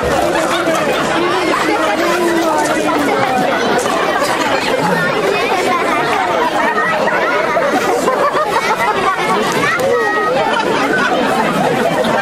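Many voices talking at once: a crowd's chatter, steady throughout, with no single voice clear enough to make out.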